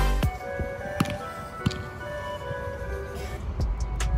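Background music with a heavy bass beat that drops away shortly after the start and comes back near the end.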